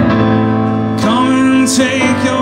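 Male voice singing a held, wavering note over sustained digital-keyboard piano chords; the voice comes in about a second in.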